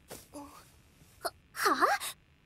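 A young female voice lets out a startled, questioning "h-huh?" near the end, its pitch dipping and then rising again. Before it come only a faint short vocal sound and a single click.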